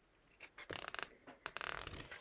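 A page of a picture book being turned by hand, with faint paper rustles and handling clicks starting about half a second in.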